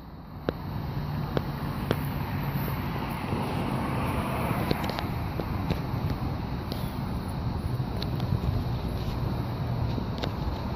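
An electric passenger train approaching head-on. Its low steady hum and rumble grow slowly louder, with faint light clicks every half second to a second.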